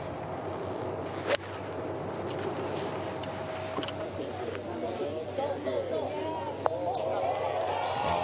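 Golf iron shot: one sharp crack of the club striking the ball about a second and a half in, followed by spectators chattering.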